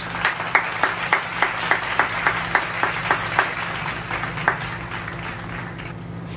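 Applause: sharp hand claps at about three or four a second over a steady wash of clapping. The claps stop about four and a half seconds in, and the wash then fades.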